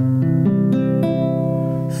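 Acoustic guitar playing a short instrumental phrase between sung lines of a lullaby: several notes change in the first second, then one chord rings on.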